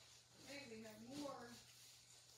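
A faint voice, starting about half a second in and lasting about a second, with no words caught, over quiet room tone and a steady low hum.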